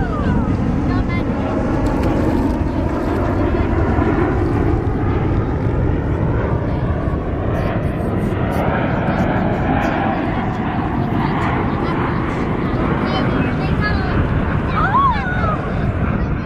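Blue Angels F/A-18 Hornet jets flying overhead in formation, heard as a steady, continuous low jet-engine rumble.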